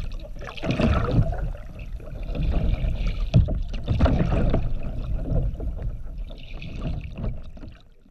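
Ducks paddling and splashing in a kiddie pool, picked up by a GoPro in its waterproof housing at the waterline: muffled, irregular sloshing and splashes with louder surges about a second in and around the middle, fading out at the end.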